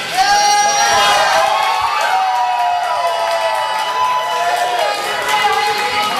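A small crowd yelling and cheering, many voices overlapping. One voice holds a long call through the middle.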